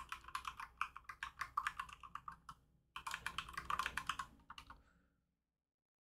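Computer keyboard typing: a fast run of keystroke clicks, a brief pause just under three seconds in, then another run that stops about five seconds in.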